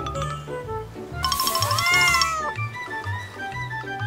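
A cat meowing once, a drawn-out call that rises and then falls in pitch and is the loudest sound, over light background music.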